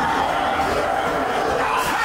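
Steady mix of background music and indistinct voices, with no single event standing out.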